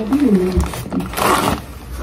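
A woman's short pitched vocal sound, like a strained grunt, followed about a second in by a brief rustling hiss.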